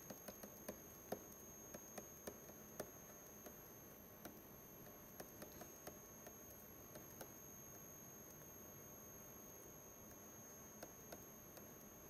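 Near silence: room tone with faint, scattered light clicks of a stylus tapping and writing on a pen tablet, denser in the first few seconds, over a faint steady high-pitched whine.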